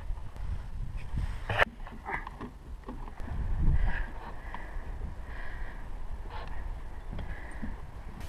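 Wind rumbling on an outdoor camera microphone, with a few faint knocks and clicks.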